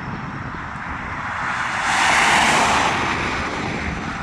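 A car driving past on a road: tyre and road noise swells to a peak about two seconds in, then fades.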